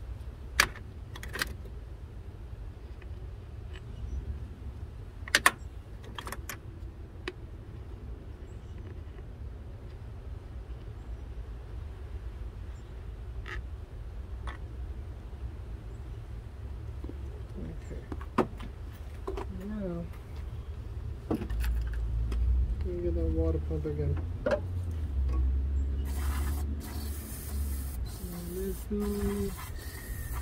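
Scattered sharp metal clicks and taps of hand tools and bolts being handled during engine-bay work, over a steady low rumble. Murmured voices come in during the second half, with a brief burst of hiss near the end.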